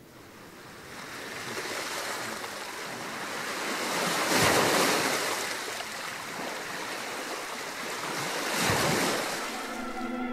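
Sound of ocean waves on the tribute video's soundtrack: a rushing surf noise that builds up from quiet and swells twice, about halfway through and again near the end, like waves breaking.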